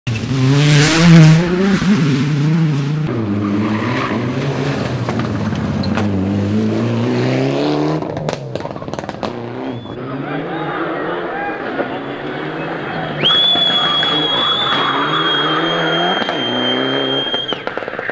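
Turbocharged Mitsubishi Lancer rally car running hard on a tarmac stage, its engine note rising and falling as it accelerates and lifts off. A few sharp cracks follow about eight seconds in, then a steady high-pitched squeal holds for about four seconds in the second half.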